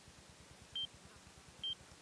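Two short, high electronic beeps about a second apart, over a faint low hum.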